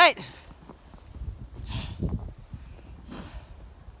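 A man's voice says "Right", then a steady low rumble of wind on the microphone, with two short rushing noises about two and three seconds in as he walks up through the snow.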